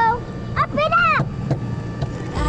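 A child's high-pitched voice calling out in one drawn-out call that rises and falls, over a steady low hum.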